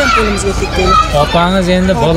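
Speech only: an adult talking in Uzbek, over a low steady background rumble.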